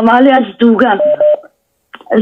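A man speaking, stopping about one and a half seconds in, with a short pause after.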